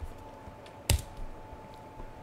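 A few clicks and taps at a computer keyboard and mouse, with one loud sharp click about a second in.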